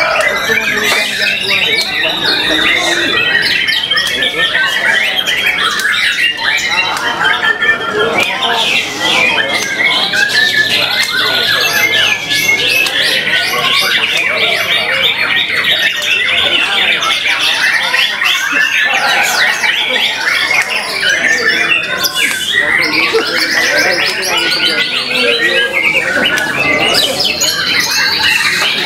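White-rumped shama (murai batu) singing without pause amid other caged songbirds, a dense tangle of overlapping trills, chips and whistles.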